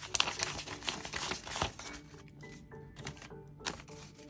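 Paper banknotes being flicked through and counted by hand: a quick run of crisp paper flicks and rustles for about the first two seconds, then sparser ones. Soft background music plays underneath.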